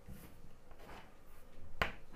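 Chalk on a blackboard: a few faint short scraping strokes, then one sharp tap near the end.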